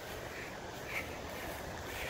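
Faint, steady background noise, a low rumble and hiss with no distinct event, in a pause between speech.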